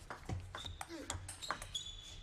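Table tennis rally: the celluloid-type plastic ball clicking sharply off bats and table in a quick run of hits, with a couple of high squeaks from the players' shoes on the court floor.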